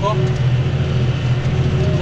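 Tractor's diesel engine running steadily under load while pulling a plough, heard from inside the cab.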